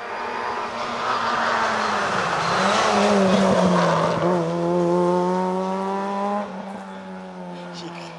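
Peugeot 106 S16 rally car's four-cylinder 16-valve engine running at high revs as the car drives through the bends, its note steady with a brief dip in pitch near the middle, then growing quieter over the last second and a half.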